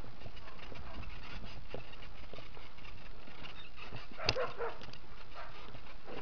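Mountain bike riding down a rough, stony trail: steady rushing and rattling of the bike and tyres over rocks, with scattered clicks and knocks. About four seconds in comes a sharp knock followed by a short, high-pitched sound.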